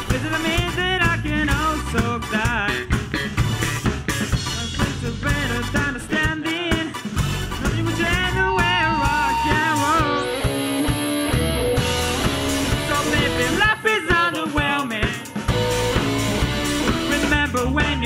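Live rock band playing: drum kit, electric guitars, bass and keyboard, with a male lead singer singing lines over the band.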